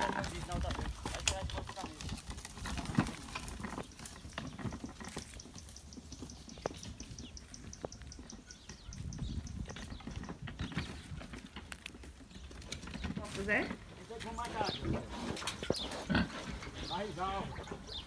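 Domestic pigs grunting in short bursts in the last few seconds, over the crackle of footsteps through dry leaves and brush.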